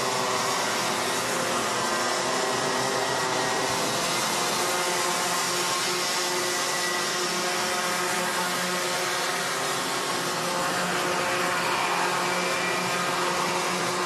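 A pack of two-stroke Rotax Mini Max racing karts running around the circuit: a steady, high buzz of many overlapping engine notes. Each kart has a 125 cc engine of about 15 hp.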